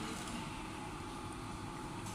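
Low, steady background hum and hiss with no distinct event: room tone.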